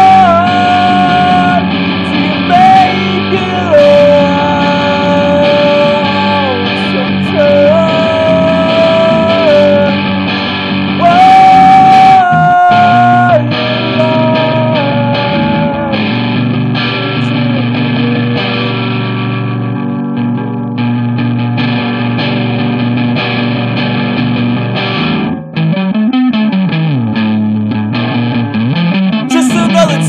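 Instrumental break in a guitar-led rock song: a sustained lead melody with slow pitch bends over steady rhythm guitar. The lead fades out about two-thirds of the way through. Two low sliding notes follow near the end.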